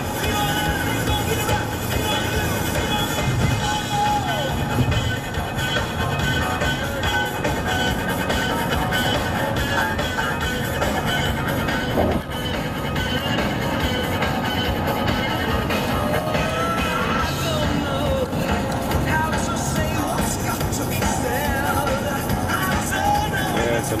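Music playing over a steady low rumble of road noise from a moving car, with a brief click about halfway through.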